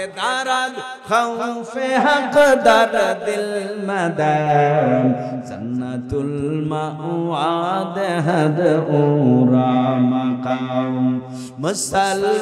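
A man's voice chanting in a melodic, drawn-out sermon style into a microphone over a public-address system, the pitch sliding up and down across long held phrases.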